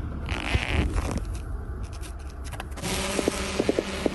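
Small quadcopter drone's propellers buzzing as it is launched from the hand and climbs away, over a low rumble.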